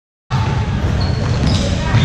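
Basketball bouncing on a gym's hardwood court during play, amid general game noise in the hall.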